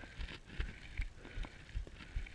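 Muffled handling noise from a covered camera being carried against clothing: low thumps about two or three times a second, with a faint rustle.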